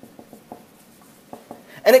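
Dry-erase marker writing on a whiteboard: a run of short, faint strokes and taps, several a second. A man's voice starts near the end.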